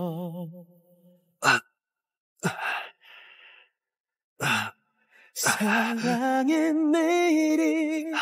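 A man's three short, sharp gasps, about a second or two apart, as he clutches his chest in pain. They come between two stretches of a slow sung song, which fades out in the first second and returns about five and a half seconds in.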